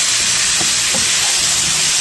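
Leeks, carrots and potatoes sizzling steadily in a pan, stirred with a wooden spoon, sweating without browning.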